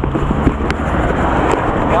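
A motorcycle engine idling with a steady low hum, giving way about half a second in to rushing wind noise on the microphone, with a few light clicks.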